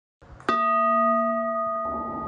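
A singing bowl or bell struck once about half a second in, ringing on with several steady, clear overtones. Near the end a rising whoosh swells in under the ringing.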